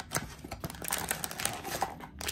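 A small cardboard blind box and its packaging handled by hand: scattered light clicks, taps and rustles.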